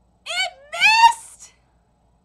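A woman's voice: two short, high-pitched, rising exclamations in quick succession, the second one longer, in an excited reaction.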